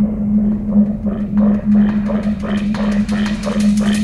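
Intro of an acid hardcore track: a steady low synth drone under a repeating acid synth line, about four notes a second, whose resonant filter gradually opens so the notes grow brighter.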